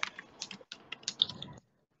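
Faint, irregular run of light clicks like typing on a keyboard, stopping about one and a half seconds in.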